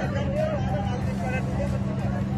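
A boat engine drones steadily under the chatter of a crowd of onlookers.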